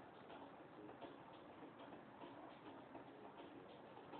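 Near silence: faint room tone with soft, irregular ticking, several ticks a second.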